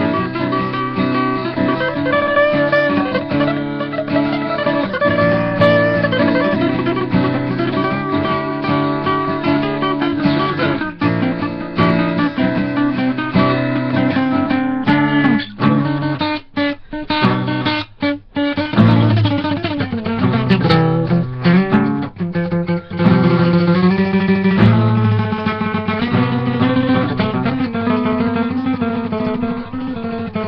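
Two acoustic guitars played together as a duet, tuned to C. About halfway through, the playing stops short several times in quick succession, then picks up again.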